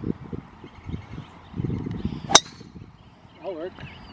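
A golf driver striking a golf ball: one sharp, crisp crack about two seconds in.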